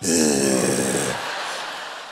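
A man's voice making a long, falling groan as a mock sleeping noise, with a breathy hiss, loud at first and fading over about a second and a half.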